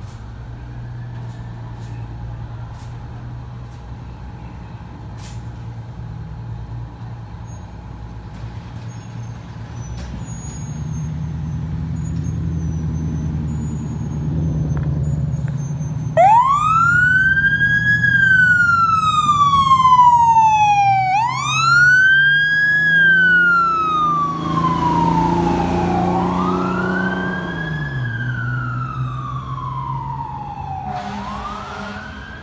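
Fire engine's diesel idling, then running harder from about ten seconds in as it pulls out of quarters. About sixteen seconds in its siren starts, wailing up quickly and sliding slowly down in cycles of about five seconds, with an air-horn blast around three-quarters of the way through.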